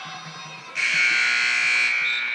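Basketball arena horn giving one loud, steady buzz of about a second, starting abruptly less than a second in.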